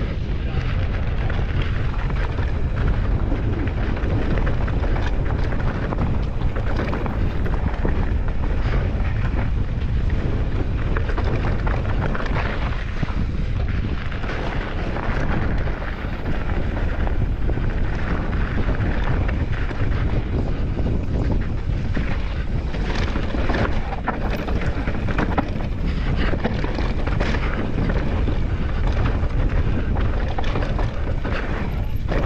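Wind buffeting the microphone of a Deviate Claymore mountain bike descending a gravel and rock trail, with tyres crunching over loose stones and the bike rattling and knocking over bumps.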